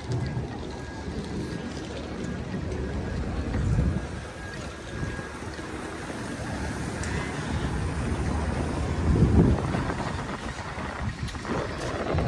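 Wind buffeting the microphone, a low, uneven rumble that swells about four seconds in and again around nine seconds, over faint street noise.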